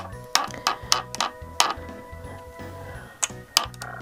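Soft background music with steady held tones, over which a scatter of light, sharp clicks or ticks falls at uneven intervals.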